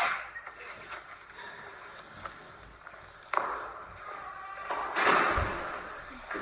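A heavy steel door shutting with a sharp, ringing metallic clank about three seconds in, followed near the end by a loud burst of rustling and scuffing.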